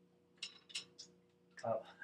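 Three short, light clicks and knocks of a plastic corn-oil bottle being handled over a pot at the stove, under a faint steady hum.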